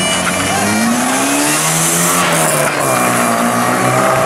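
A rally car's engine revving as it pulls away from the start, the engine note rising and falling several times as it accelerates off.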